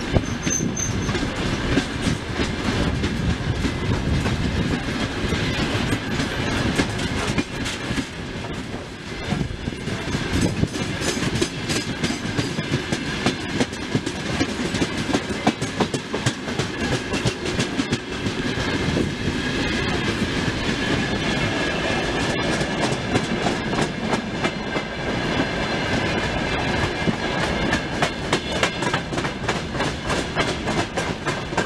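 Long freight train of open-top wagons rolling past close by on the broad-gauge LHS line, its wheels clicking over the rail joints in a steady clickety-clack over a low rumble, with a faint high whine from the wheels.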